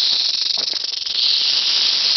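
Western diamondback rattlesnake shaking its tail rattle in a steady high buzz, its defensive warning.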